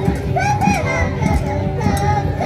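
Andean carnival music: high-pitched singing over drum beats, with voices from the crowd. A single sharp crack near the end.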